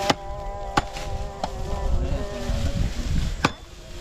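A hand chopper striking green fodder stalks on the ground: four sharp chops, three close together in the first second and a half and one more about three and a half seconds in. A wavering buzz runs underneath.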